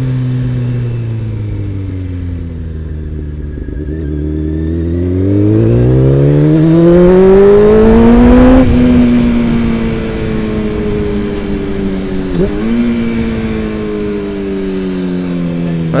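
Honda CBR600 inline-four motorcycle engine, heard from the rider's seat. The engine note sinks as the bike slows, then climbs steadily for several seconds under acceleration. About halfway through it drops off when the throttle closes and winds slowly down, with one brief dip, as the engine brakes hard in first gear.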